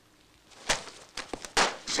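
A single sharp knock about two-thirds of a second in, followed by a few lighter clicks and shuffling movement, with a noisy breath-like onset near the end.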